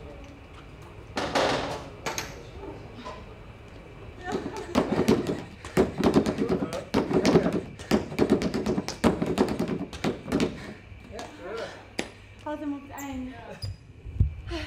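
Rapid, irregular taps and thuds of trainers on a plastic aerobic step during fast step-ups, clustered in the middle of the clip. Indistinct voices follow near the end.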